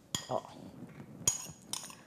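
Spoon clinking against a bowl a few times while scooping out mayonnaise: short sharp clicks, one near the start and two more in the second half.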